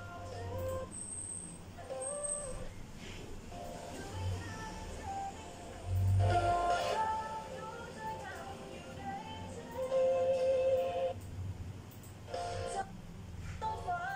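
Music with singing: long held sung notes that slide in pitch over a backing track with a low pulse, swelling louder about six and ten seconds in.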